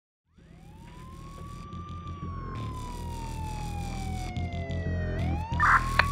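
A siren wailing, fading in from silence: its pitch climbs, sinks slowly for about three seconds, then climbs again, over a steady low drone. There is a brief louder burst near the end.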